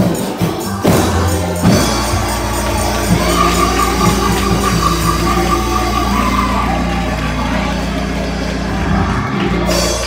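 Church choir singing a gospel song over instrumental backing with sustained low notes; the music stops near the end.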